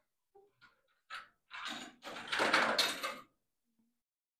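A token put into a book vending machine's coin mechanism and the mechanism worked by hand: a few faint clicks, then two short mechanical rattles, the second and louder about a second long.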